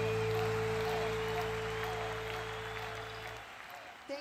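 A live rock band's final held chord slowly fading, then stopping about three and a half seconds in, over audience applause.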